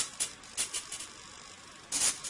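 Small motor on a sun-tracker prototype turning its solar panel in steps, heard as a string of short, high-pitched mechanical bursts, the loudest at the start and near the end.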